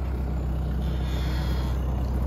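A truck engine running steadily, a low hum.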